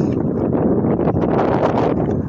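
Wind buffeting the phone's microphone: a loud rushing noise that swells and peaks near the end.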